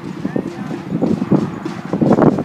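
Indistinct voices of players and onlookers calling across an outdoor football pitch, over an uneven low rumbling.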